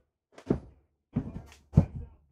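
Footsteps on the trailer's floor: three dull thuds, one about every 0.6 seconds.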